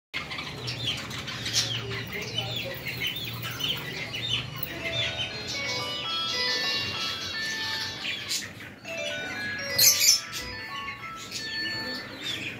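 A flock of caged budgerigars chirping and chattering in rapid short calls, over a low steady hum for the first few seconds. Through the middle come clear held notes at stepping pitches, and about ten seconds in there is a loud brief burst of wings flapping.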